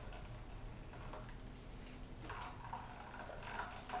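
Faint wet squelching and trickling as a cloth nut milk bag full of blended nut milk is squeezed by hand, the milk running into a copper bowl.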